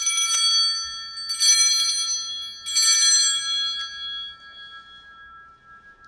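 Altar bells (a cluster of small sanctus bells) rung in three shakes about a second and a half apart, each ringing on and dying away. They mark the elevation of the consecrated host.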